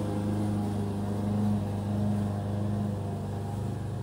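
Petrol lawn mower engine running steadily outside, a low, even drone.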